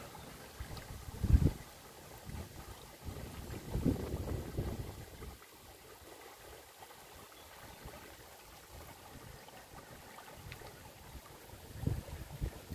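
Shallow stream rippling over pebbles, faint and steady, with low rumbles of wind buffeting the microphone about a second in, around four seconds, and again at the very end; the first rumble is the loudest.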